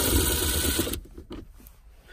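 Cordless power drill with a Phillips bit backing out a console screw, its motor running and then stopping about a second in.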